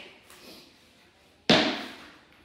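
A single sharp bang about one and a half seconds in, ringing briefly in the room: a tennis ball bounced hard on the wooden floor as a distraction for a dog holding its place.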